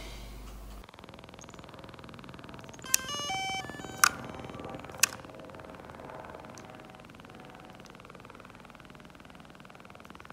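DJI Mavic Pro drone powering up after a gimbal repair: a quick run of stepped electronic beep tones about three seconds in, then two sharp clicks a second apart, over a faint steady hum.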